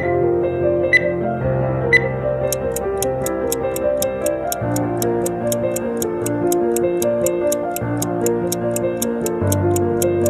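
Soft background music with three short countdown beeps a second apart as a timer runs out, then a stopwatch ticking about four times a second over the music to mark the rest period.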